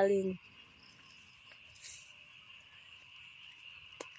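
Faint, steady chorus of insects chirping, a continuous high buzz, with a brief soft rustle about two seconds in.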